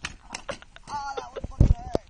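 A bicycle and rider crashing to the ground after a dirt jump: scattered knocks and rattles, a person crying out about a second in, then a heavy thud just past one and a half seconds as the rider and bike hit the grass.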